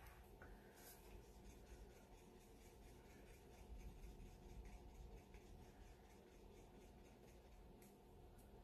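Faint, regular scraping of a wooden stir stick against the inside of a small paper cup as acrylic pouring paint is stirred.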